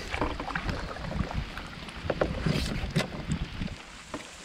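Canoe paddling: irregular splashes and drips from paddle strokes, with scattered knocks of the paddle against the hull, busiest between two and three seconds in.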